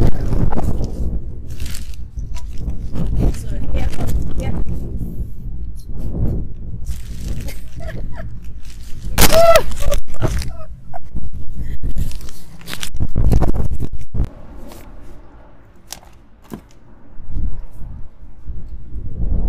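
Wind buffeting the microphone in uneven gusts, with scraping and knocking from handling throughout; quieter for a few seconds near the end.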